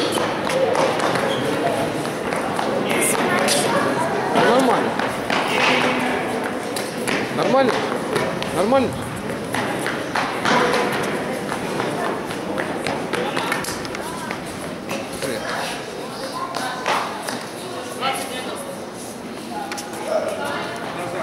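Background chatter of many voices, with children calling out, in a large reverberant sports hall, and scattered thuds, likely footsteps on the court.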